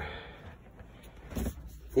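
Faint, steady air noise from an RV basement air conditioner running after its unit has been cleaned out and refitted, now blowing harder than before.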